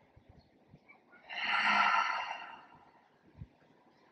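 A woman's single long, audible breath, about a second and a half long, starting about a second in, swelling and then fading away.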